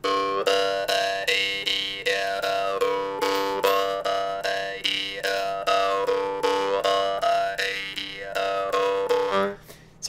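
Jaw harp tuned to G, plucked at a fast steady rate, buzzing and rattling a lot, while the player shapes it with his glottis so that a bright whistling overtone slides smoothly up and down three times over the unchanging drone. The playing stops about half a second before the end.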